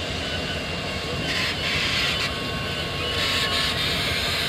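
Milwaukee Road 261, a 4-8-4 steam locomotive, rolling past close by with its tender: a steady rumble of wheels on rail. A louder hiss comes twice, starting about a second and a half in and again near the end.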